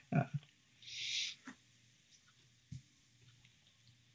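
A man's brief hesitant 'uh', then a quiet room with a short hiss about a second in, a small click and a soft knock.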